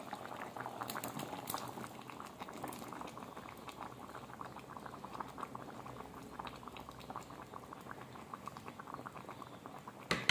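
Pot of sambar simmering, a steady crackle of small bubbles popping at the surface, a little louder in the first couple of seconds.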